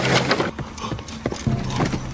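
A series of irregular hard knocks and clacks over a low steady hum.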